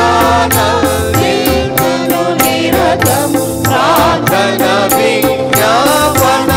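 Church choir singing a devotional song into microphones, a woman's voice leading, with a tabla playing a quick steady beat and held notes sustained underneath.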